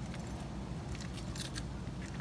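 A key working in a metal window lock: a few light metallic clicks and faint jingling of the key ring, most of them about halfway through, over a low steady rumble.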